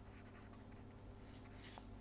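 Faint scratching of a felt-tip marker writing a word on paper, with a steady low hum beneath.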